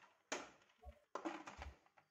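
A few faint, short knocks and scrapes from a stainless-steel pressure cooker being handled as its lid goes on.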